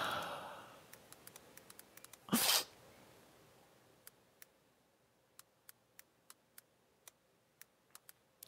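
One short burst of breath noise, a sniff or sharp exhale close to a headset microphone, about two and a half seconds in, after a fading breath. Then near silence broken by faint, evenly spaced ticks.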